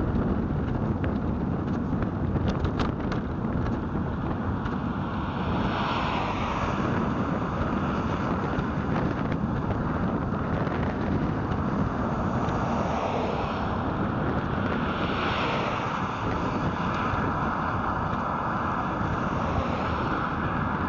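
Steady wind rush on the microphone and road rumble from a faired bike rolling along a road. A few times a hiss swells and fades as vehicles pass.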